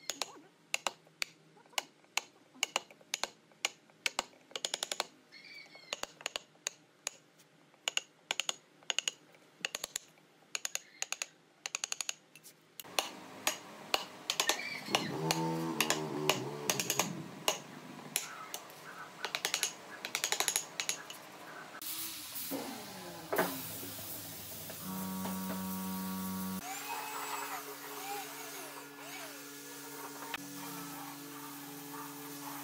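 Steel wood chisel cutting into the end grain of a tree-trunk slab, a series of sharp taps about twice a second, then louder, denser knocks of a wooden mallet driving a chisel. Near the end a spray gun hisses steadily as finish is sprayed.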